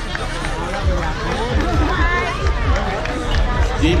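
Crowd of many voices talking and calling out at once, over low thumps.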